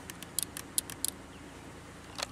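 A quick run of small plastic clicks as the Pontiac Aztek's door-mounted power window switches are pressed, with no window motor running in response. The owner suspects a bad replacement switch.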